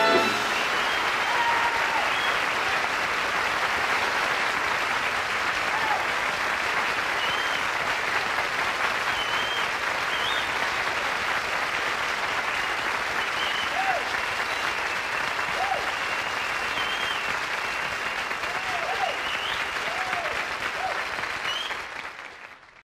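Live concert audience applauding and cheering just after the final note, with scattered whistles; the applause fades out at the end.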